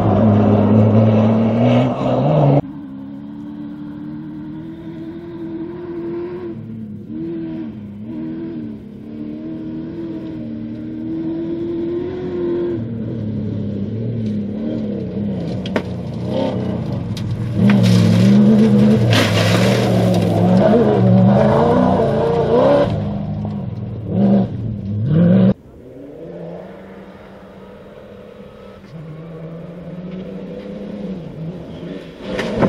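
Cross-country rally car engines accelerating and revving hard through gear changes as several cars pass one after another, with the sound changing abruptly between passes. The loudest passes come at the very start and between about 17 and 25 seconds in.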